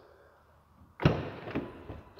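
The rear crew-cab door of a 2018 Ram 2500 pickup is unlatched and pulled open, with a sudden clack of the latch about a second in. It is followed by about a second of lower-level mechanical noise as the door swings and the power running board extends.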